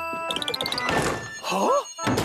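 Cartoon sound effects over the musical score: a quick rising run of notes, then a thunk about a second in, and a short swooping tone that rises and falls near the end.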